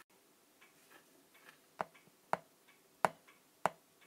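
Four sharp, separate clicks in the second half, unevenly spaced about half a second apart, over faint room tone with a few softer ticks earlier.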